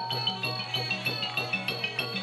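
Thai piphat ensemble playing: boat-shaped ranat ek xylophone and drums in a quick, even pulse of struck notes, about five a second.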